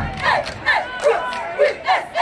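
Cheerleading squad chanting a sideline cheer in unison: short shouted words in a steady rhythm, about two or three a second.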